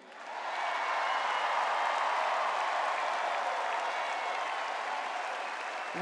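Large audience applauding, building up within the first half second and then holding steady, easing off slightly near the end.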